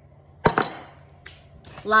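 A sharp clink of a hard kitchen item knocking against the ceramic bowl or counter about half a second in, ringing briefly, then a fainter click.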